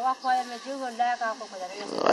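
Quiet speech: a person talking softly in a low, uneven voice, fainter than the interview speech around it.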